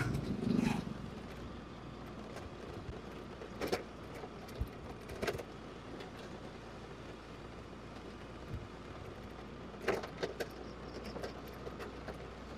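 Steady low running hum and road noise of a motorbike ridden along a rough concrete lane, with scattered light rattles and clicks. Another motorbike passes close by in the first second.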